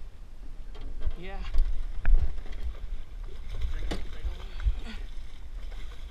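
A hooked musky splashing at the water's surface beside a small aluminium fishing boat, with a couple of sharp knocks about two and four seconds in and a low rumble throughout.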